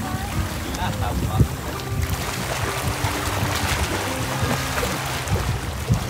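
Steady rushing noise of wind and sea washing against the breakwater rocks, with a low hum underneath.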